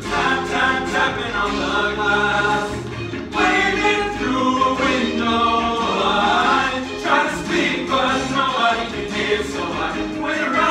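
Male vocal ensemble singing in harmony over musical accompaniment with a steady bass line; the voices hold and shift through sustained chords rather than clear sung words.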